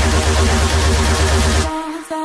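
Electronic dance music with a heavy, steady bass beat; near the end the beat and bass drop out, leaving a few sparse held synth notes.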